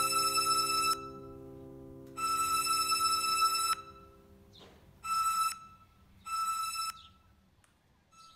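Synthesized electronic tone sounding four times at the same high pitch, the first two held over a second each and the last two shorter, over a low sustained synth chord that fades away about halfway through.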